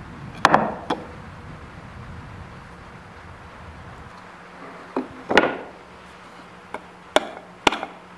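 End-cutting pliers prying old nails out of a wooden rocking chair part: a scattered series of about seven sharp clicks and cracks as the jaws bite and the nails pull free of the wood, the loudest a little past halfway.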